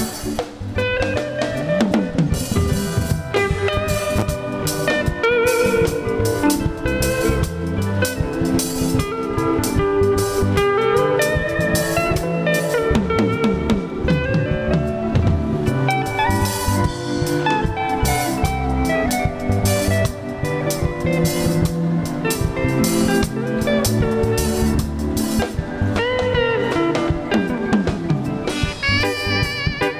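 A live band playing an instrumental: electric guitar lines over a steady drum kit beat with snare and bass drum.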